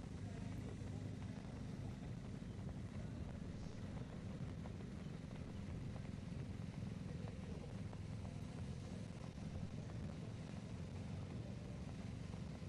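Outdoor road-race ambience: a steady low rumble with a few faint scattered ticks.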